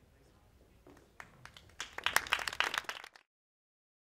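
Audience clapping: a few scattered claps about a second in build quickly into brisk applause, which cuts off suddenly near the end.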